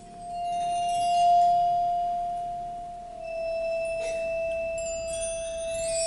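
Concert band percussion opening a piece on its own: one high sustained tone held steadily, with clusters of high ringing notes sounding and fading above it. A soft strike comes about four seconds in.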